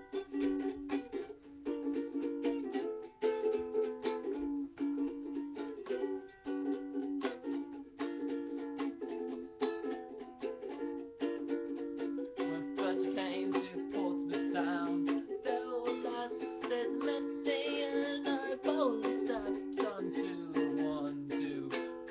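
Ukulele strummed steadily in chords, an instrumental break between sung verses of a folk song.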